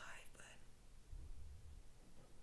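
Very quiet pause: a woman's faint, breathy voice trails off in the first half second, then only faint room hiss with a low hum about a second in.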